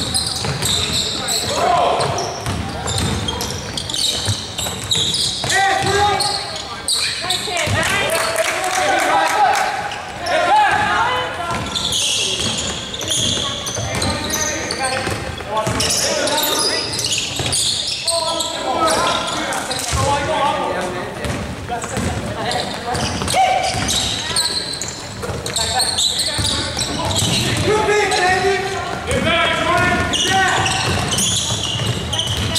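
A basketball bouncing repeatedly on a hardwood gym floor during play, with players' voices calling out on the court.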